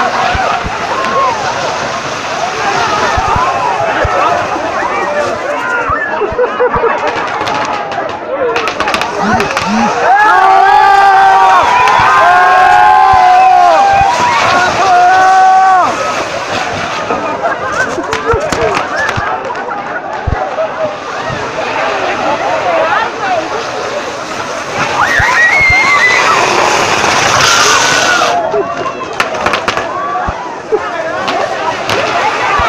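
Crowd yelling and screaming around a torito, a bull-shaped frame of fireworks, as it sprays hissing sparks and popping rockets among them. Long, loud high yells come about ten seconds in, and a strong hissing rush of sparks comes near the end.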